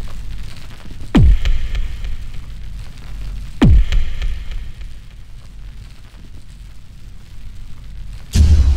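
Cinematic boom sound effects of an animated logo sting: two heavy hits, about a second in and near four seconds, each a quick downward sweep into a deep rumble that slowly fades.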